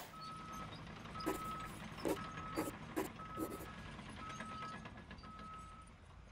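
A vehicle reversing alarm beeping about once a second, six steady high beeps, over a low engine rumble, with a few sharp knocks between the second and fourth beeps.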